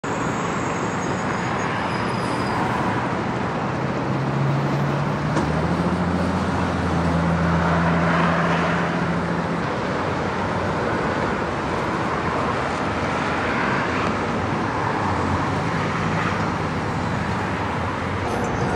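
Freeway traffic noise: a steady rush of vehicles passing, swelling as individual cars go by, with a low engine hum from about four to ten seconds in.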